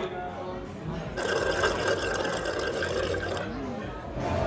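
Drink being sucked up through a straw: a noisy slurping gurgle that starts about a second in and lasts about two seconds, over faint restaurant chatter.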